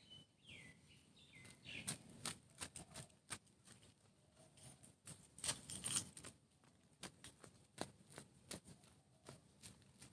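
Irregular sharp clicks and taps, loudest around the middle, typical of footsteps in slippers on pavement. A bird gives a few short falling whistles in the first two seconds.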